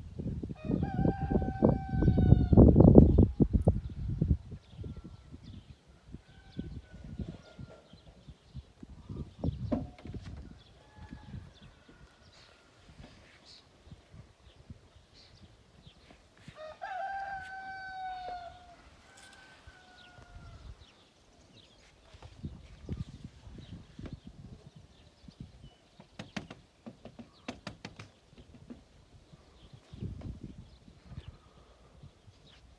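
A rooster crowing twice: once about a second in and again about halfway through, each crow about two seconds long. A loud low rumble runs under the first crow.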